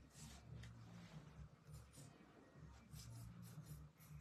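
Near silence: faint scratching and light taps of a fine-tipped glue bottle drawn over die-cut card stock and paper being handled, over a low steady hum.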